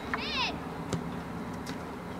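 A short, high-pitched shout from a young player or spectator near the start, falling in pitch, over steady background noise. Two sharp knocks follow, about a second in and near the end.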